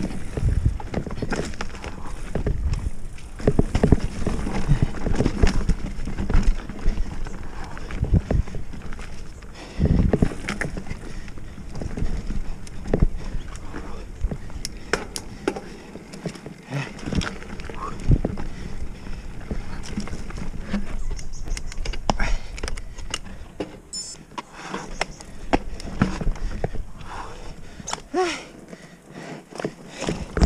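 Oggi Cattura Pro mountain bike rattling over rough dirt singletrack: tyres rumbling on the ground with frequent sharp knocks and clatter from the bike as it hits roots and bumps, heard from a camera on the rider.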